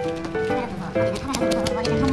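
Background music: a melody of short held notes over a steady percussive beat.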